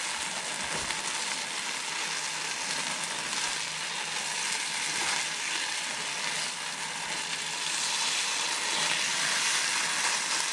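Smoked salmon, green onion and cream cheese sizzling in a nonstick frying pan while being stirred with a silicone spatula. A steady frying hiss that gets a little louder near the end.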